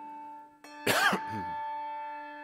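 Handbell ringing with a long, slowly fading tone, rung again a little over half a second in, as a memorial bell after a name of the departed. A loud cough about a second in is the loudest sound.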